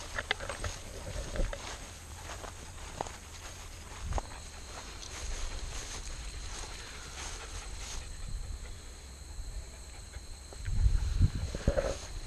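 Footsteps rustling through prairie grass, with low wind rumble on the microphone and a louder low rumble near the end. Insects buzz steadily in high thin tones, and a second, lower insect tone joins about a third of the way in.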